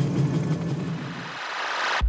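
Steady rumbling background noise with a low hum from a film soundtrack. The low rumble cuts away about a second and a half in, leaving a thin hiss.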